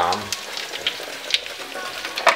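Ground-meat cutlets (kotlety mielone) frying in a pan: a steady sizzle with scattered crackles and pops.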